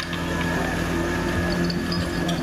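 Portable fire pump's engine running at a steady speed.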